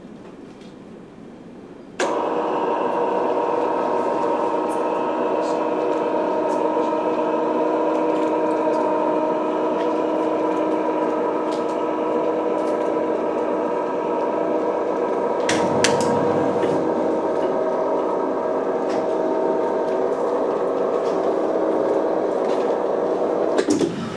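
Electric motor of a roll-up projection screen running as the screen retracts: a steady hum of several tones that starts suddenly about two seconds in and stops just before the end, with a few light clicks a little past the middle.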